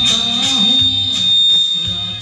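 A man singing into a microphone over a karaoke backing track with a steady beat of about two strikes a second.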